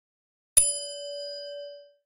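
A single bright notification ding struck about half a second in, ringing on in one steady tone with fainter higher overtones and fading out over about a second and a half.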